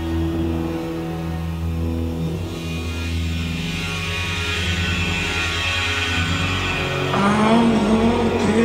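Live band playing an instrumental passage of a slow song, with long held low notes underneath. A voice comes in singing near the end.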